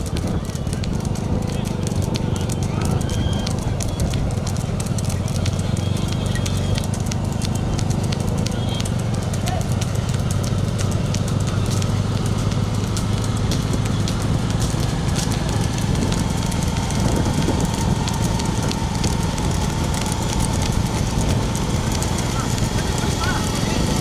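Motorcycle engines running steadily with wind noise, over the quick clatter of running bulls' hooves on the tarmac road, with people's voices in the mix.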